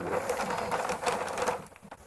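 Rapid clicking and rustling close to the microphone over a faint steady hum, dying away near the end.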